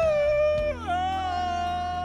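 A man singing one long held note. It dips briefly about two-thirds of a second in, then holds a steady pitch, over a low steady hum.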